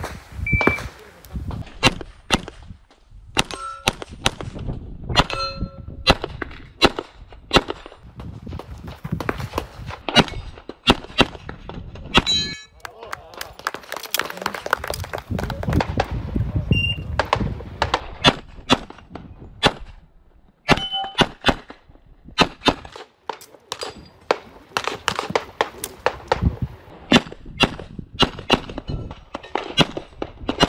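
Handgun fired in fast strings of shots, several hits answered by the short metallic ring of steel targets. The shots come in quick bursts with brief pauses between positions.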